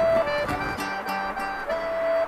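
Acoustic guitar and accordion playing a slow ballad's instrumental phrase, the accordion holding steady notes over plucked guitar.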